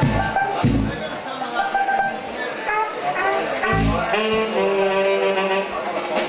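Horn notes, saxophone or trumpet, played in short phrases and held tones as a band warms up. A few heavy low thumps come near the start and again about four seconds in, over room chatter.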